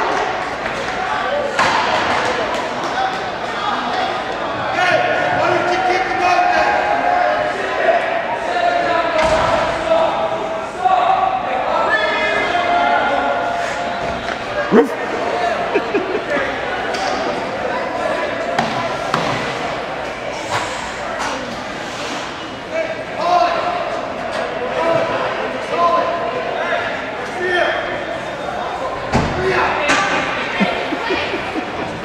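Hockey pucks and sticks knocking against the rink boards and glass, echoing in a large ice arena, with people talking and calling over it. One sharp knock stands out about halfway through.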